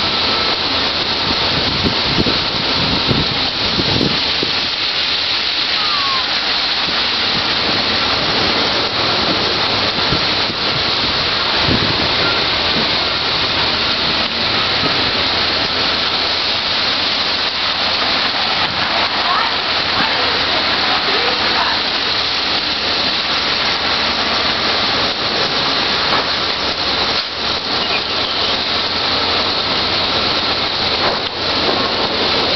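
Torrential wind-driven rain from a severe thunderstorm squall line pouring onto pavement and parked cars: a loud, steady rushing hiss.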